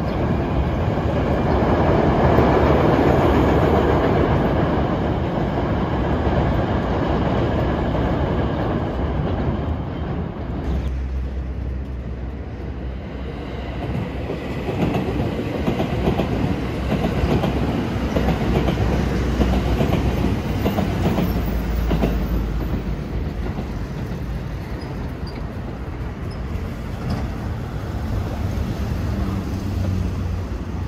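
Trains passing on the line, running loudest about three seconds in. The sound breaks off abruptly about ten seconds in, and a JR limited express is then heard running past and away.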